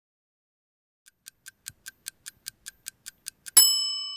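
Clock-ticking sound effect: quick ticks, about five a second and growing louder, followed near the end by a single bright chime that rings on and fades.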